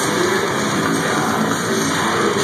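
Death metal band playing live at full volume: electric guitars, bass and drums in a dense, continuous wall of sound.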